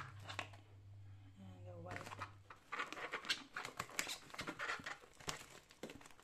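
Plastic cling film over a tray of button mushrooms crinkling under a hand, a quick run of short crackles from about three seconds in.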